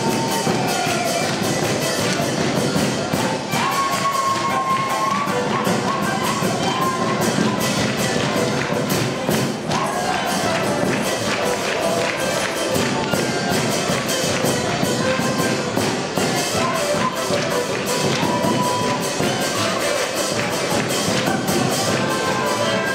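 A Ukrainian folk instrumental band playing a dance tune: accordion, clarinet and violin carry the melody over a steady beat from a large drum with a cymbal on top.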